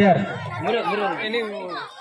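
Speech only: a voice talking through a public-address loudspeaker, with people chattering around it.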